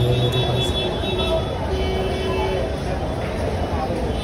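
Busy urban ambience on a crowded footbridge: a steady din of traffic with background voices of passers-by, and a brief held tone about two seconds in.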